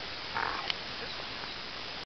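A young American Staffordshire Terrier gives one short, rough bark about a third of a second in, followed by a sharp click, over a steady hiss.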